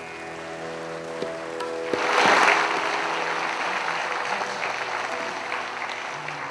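The last held note of a bansuri-led Nepali ensemble rings out, and about two seconds in an audience breaks into applause that carries on.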